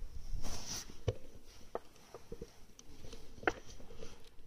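Small clicks and knocks with a brief rustle close to the microphone, over a low steady hum; no shot is heard.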